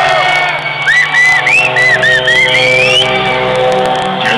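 Black metal band playing live, loud and distorted, with held notes and a steady low drone. About a second in come high squealing tones that bend up and down, then slide upward near the three-second mark.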